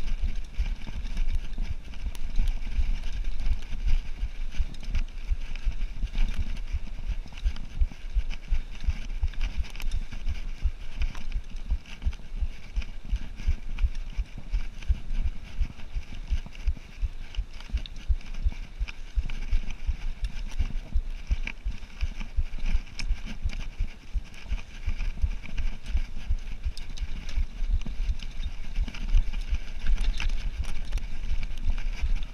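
Cannondale Trail 7 mountain bike ridden over a bumpy dirt trail: a continuous rumble of tyre noise and frame rattle, with many irregular low thumps from the rough ground and wind noise on the microphone.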